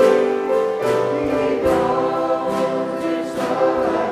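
A church congregation singing a gospel hymn together with instrumental accompaniment and a steady beat.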